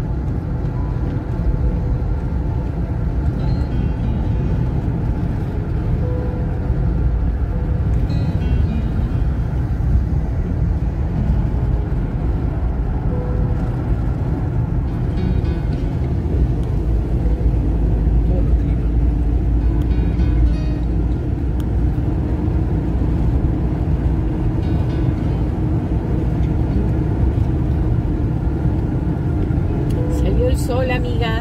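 Steady low rumble of road and engine noise inside a car cruising along a highway, with faint music and voices underneath.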